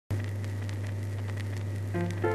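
Steady low hum with scattered crackles and a faint hiss, like old-record or old-film surface noise, starting just after the beginning.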